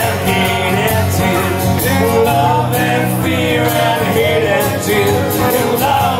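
Live acoustic music: two acoustic guitars strummed in a steady rhythm, with men singing into microphones.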